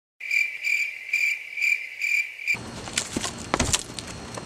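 Crickets chirping, a high trill pulsing about twice a second, used as a stock sound effect; it cuts off suddenly about two and a half seconds in. After it come a few sharp clicks and a low thump.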